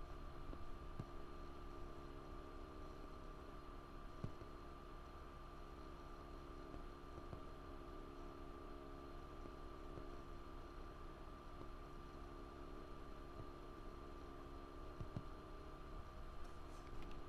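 Faint steady electrical hum with a thin whining tone, the background noise of a computer's recording setup, with a few faint mouse clicks.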